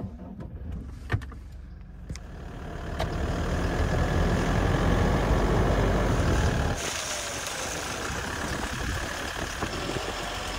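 A pickup truck's engine starts, then the truck drives off over grass and onto a gravel track, with a steady engine rumble and tyre and wind noise, loudest in the middle.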